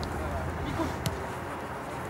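Football pitch ambience: faint distant shouts from players over a low steady rumble. About halfway through there is one sharp knock, a football being kicked.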